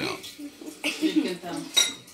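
Metal cutlery clinking and scraping against china plates and a bowl, a few short knocks with one sharp ringing clink near the end, the loudest sound. A child's voice is heard faintly in between.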